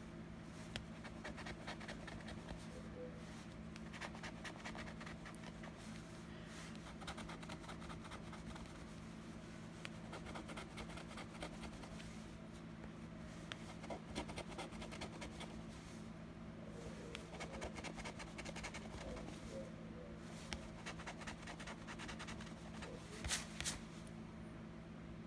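A gold coin scraping the scratch-off coating from an instant lottery ticket: runs of quick, faint scratching strokes with short pauses between spots.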